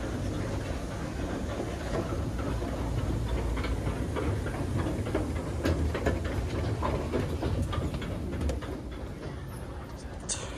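Narrow single-file Otis escalator running under a rider: a steady low mechanical rumble with scattered clicks and rattles from the moving steps. It gets quieter near the end as the rider steps off.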